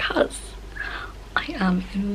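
Speech only: a woman talking close to the microphone, no other sound.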